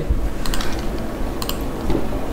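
Computer keyboard clicking as shortcut keys are pressed: a few short, sharp clicks, a pair about half a second in and another close pair at about a second and a half.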